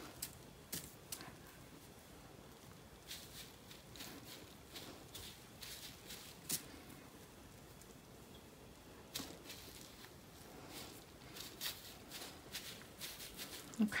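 Faint, scattered rustles and light taps of hands tearing, placing and patting dry wool batt fibre laid out on bubble wrap.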